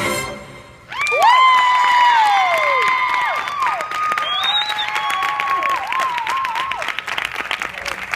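Dance music fades out, and after a brief lull an audience breaks into applause. Long, loud, high-pitched whoops and a whistle ring out over the clapping, loudest in the first couple of seconds after the lull.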